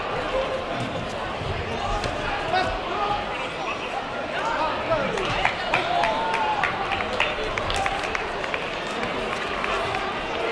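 Indistinct voices calling out across the hall, with a run of short sharp slaps from kicks and punches landing on gloves and foot pads between about five and eight seconds in.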